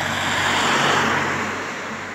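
A road vehicle passing by: its noise swells to a peak about a second in, then fades away.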